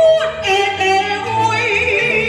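Taiwanese opera (gezaixi) singing: a high, microphone-amplified voice holding long notes that slide and waver, over instrumental accompaniment.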